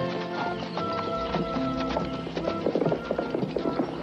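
Background music score, with a horse's hoofbeats clip-clopping in quick rhythm from about two and a half seconds in.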